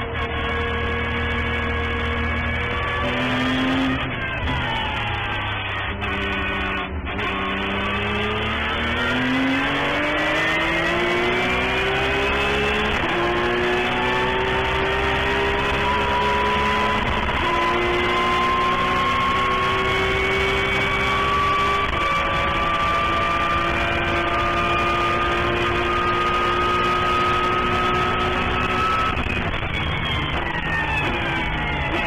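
Porsche 911 GT3 Cup race car's flat-six engine heard from inside the cockpit at racing speed. The engine note falls as the car slows for a corner in the first few seconds, then climbs hard under acceleration, dropping in pitch at upshifts about 13, 17 and 22 seconds in. It then pulls steadily higher in top gear down the straight and falls away again at the very end under braking.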